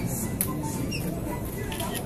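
A few short, high squeaks of shoes on a polished wooden floor as two people shift their feet while grappling, with a sharp click about half a second in, over a murmuring crowd.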